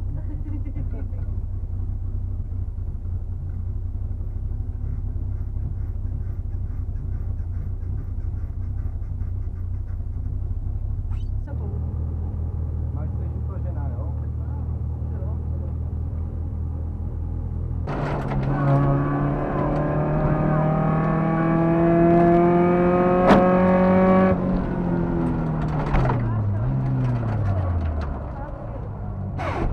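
Škoda 130 rally car's four-cylinder engine heard from inside the cabin, idling steadily at first, then about 18 seconds in revving hard as the car launches, its pitch climbing steadily for several seconds with a sharp click near the top, then falling away as the driver lifts off.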